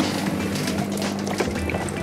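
Electric foot spa bath switched on with a click of its button, then its bubble pump humming steadily and churning the water, under background music.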